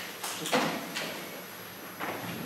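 A few brief knocks or bumps, the loudest about half a second in, with a little room echo.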